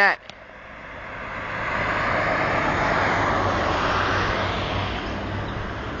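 A passing vehicle: a broad rush of noise that swells over about two seconds, holds, then slowly fades away.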